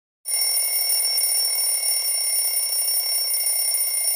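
A steady, high electronic alarm ringing with a rough buzzing edge. It starts abruptly a moment in and runs at an even level for about four seconds.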